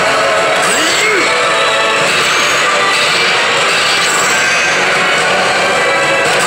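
Pachislot machine playing loud, steady bonus-zone music and electronic effects, with a couple of sweeping pitch glides about a second in.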